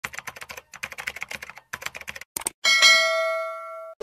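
Animation sound effects: rapid keyboard-typing clicks for about two and a half seconds, then a single bell ding that rings on and stops abruptly near the end.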